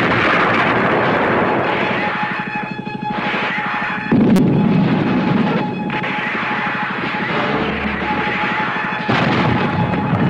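Artillery shell explosions in a film soundtrack: a dense, loud rumbling roar with fresh blasts about four seconds in and about nine seconds in, with a film score running underneath.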